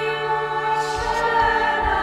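A choir of religious sisters singing a hymn, holding long sustained notes.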